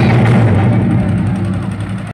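Loud recorded dance music played for a stage performance, heavy in the bass, easing slightly in level near the end.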